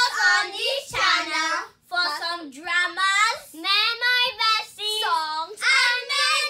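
A child singing unaccompanied, a run of short, high-pitched phrases with brief pauses between them.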